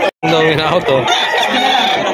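Roosters crowing amid people talking, after a brief dropout to silence just after the start.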